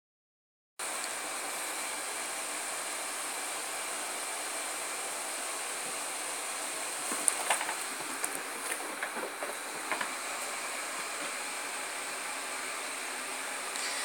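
Steady room hiss, with a few short knocks and rustles of handling in the middle.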